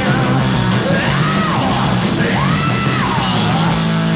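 Rock band playing live, loud guitars and drums, with a voice yelling three long notes that rise and fall over the band.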